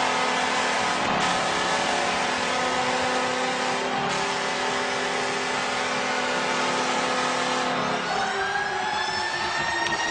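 Arena goal horn sounding one long steady chord over a cheering hockey crowd after a goal; the horn cuts off about eight seconds in while the crowd noise carries on.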